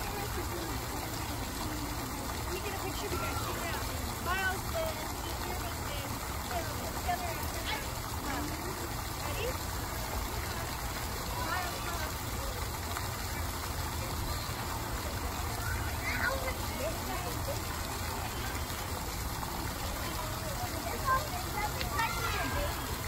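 A water jet spraying from an artificial rock into a pool, a steady rushing and splashing of water, with faint distant voices of people chattering over it.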